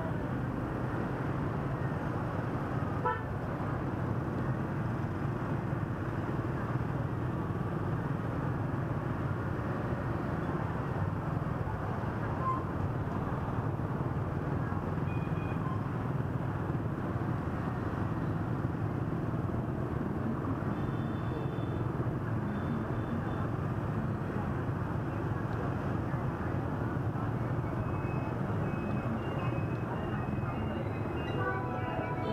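Dense scooter and motorbike traffic at rush hour: a steady din of many small engines, with a few short horn beeps around the middle and near the end.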